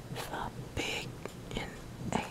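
Whispered speech: a man whispering a short phrase in breathy, syllable-length bursts of hiss.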